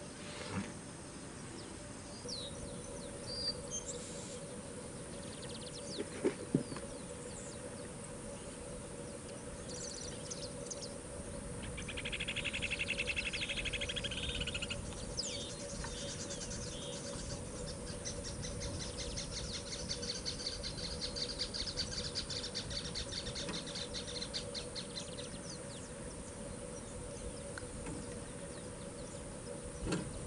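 Small birds calling: a fast chirping trill about twelve seconds in, then a longer, higher-pitched rapid trill a few seconds later, with scattered single chirps, over a faint steady hum and a few soft clicks.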